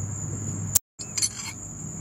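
A few light metallic clinks of hand tools, steel wrenches and a feeler gauge, being handled during a valve-clearance adjustment, with a short break in the sound about a second in. Crickets chirp steadily in the background.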